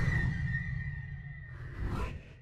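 Intro sound effect: a deep rumble with a steady high tone and sweeping glides, fading away, then a short whooshing swell near the end.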